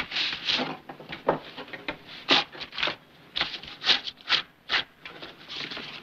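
Pen scratching across paper in short, irregular strokes as a letter is written.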